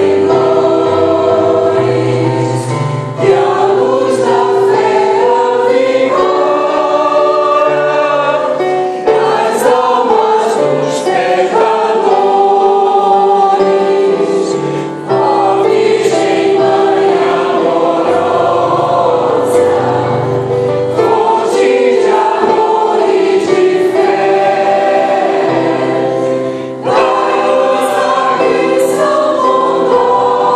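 A mixed choir of women and men singing a hymn together, accompanied by a digital piano, with brief breaks between phrases about 3, 15 and 27 seconds in.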